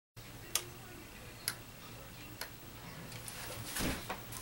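Three sharp ticks, evenly spaced about a second apart, over a faint steady low hum, followed by a brief rustle of movement near the end.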